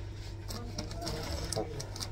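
A steady low machine hum with faint scattered ticks.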